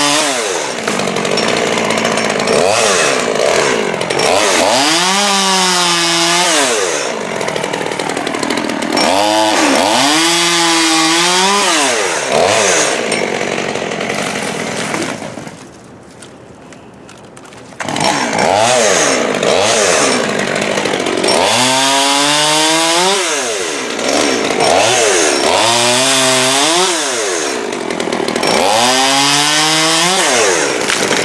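Holzfforma G111 top-handle two-stroke chainsaw revving and cutting through maple limbs overhead in repeated bursts, the engine pitch rising and falling with each cut. About halfway through it goes much quieter for a couple of seconds, then picks up again.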